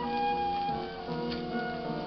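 Flute playing a slow melody with piano accompaniment, reproduced from a 1929 78 rpm shellac record: a long held note, then a few shorter ones, with a faint click or two from the record surface.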